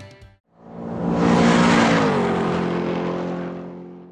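A car engine sweeping past: it swells up out of a brief silence, its pitch drops as it goes by, then it fades away.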